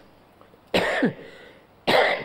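An elderly man coughing twice, the first cough a little under a second in and the second near the end.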